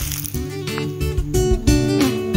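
Background music on acoustic guitar, strummed chords with held notes.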